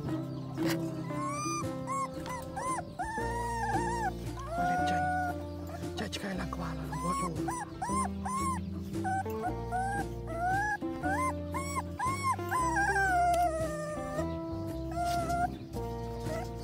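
A puppy whimpering and crying in many short squeals that rise and fall in pitch, over background music with held chords and a bass line.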